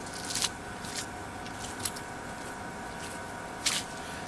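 Footsteps and handling noise from a man picking up a rebar-tying tool: a handful of short scuffs and clicks, about five in four seconds, over a steady faint hum.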